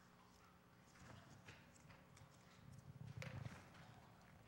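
Faint scattered clicks and soft knocks, the loudest about three seconds in: footsteps on the floor and the light handling of communion bread and cups.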